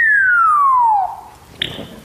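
African grey parrot whistling a long falling tone that slides steadily down in pitch, imitating something falling, then making a short soft little splat sound.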